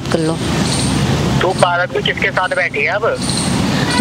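Road traffic noise, a motor vehicle passing, with a voice heard over it for a moment in the middle.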